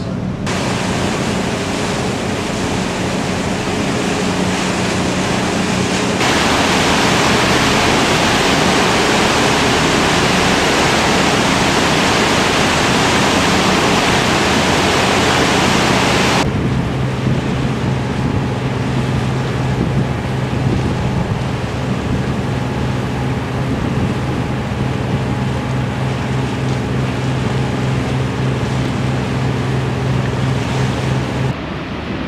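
Steady low drone of a tour boat's engine under rushing wind and water noise. From about six seconds in, a much louder rushing hiss covers it for about ten seconds, then cuts off suddenly, leaving the engine drone plainer.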